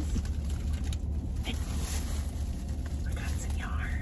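Steady low hum of a car's cabin, with a few faint handling sounds as a spool of thread is picked up, and a brief murmur of voice near the end.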